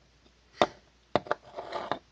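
Handling sounds on a wooden workbench: one sharp knock, then two quick clicks, then a short scrape or rub near the end.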